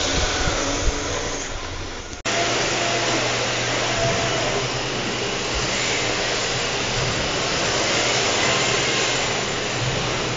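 Rear-wheel-drive RC drift cars running on an indoor track, a steady whirring, hissing din. The sound cuts off abruptly about two seconds in and comes back, now with a steady low hum under it.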